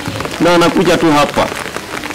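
Rain falling on umbrellas, a steady hiss of many small drops, under a man's voice speaking briefly into a handheld microphone, with a short laugh near the end.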